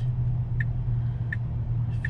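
Steady low hum inside an electric car's cabin, with two faint short ticks about three quarters of a second apart.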